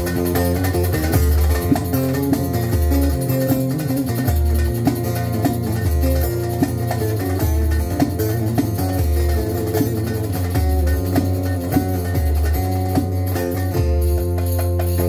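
Instrumental break of a Turkish folk song: a plucked lute plays the melody over a sustained low bass line, with a few scattered percussion hits.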